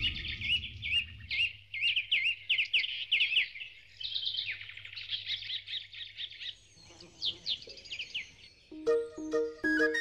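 Songbirds chirping and twittering busily, many quick rising and falling chirps overlapping. They thin out near the end as light music with pulsing notes comes in.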